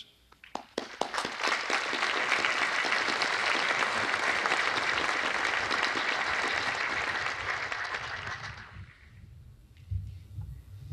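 Audience applauding: a few scattered claps at first, swelling within about a second into steady applause that fades away near the end.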